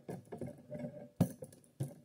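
Light clattering of hard parts being handled, with two sharp knocks, the louder one just over a second in and a second near the end, as the removable nose hatch door's hinge hook is fitted back onto its bar.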